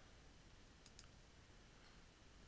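Near silence: room tone with two faint computer-mouse clicks close together about a second in.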